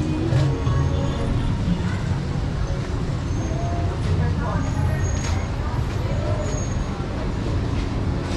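Busy street ambience: a vehicle engine running steadily as a low hum, with scattered voices of passers-by.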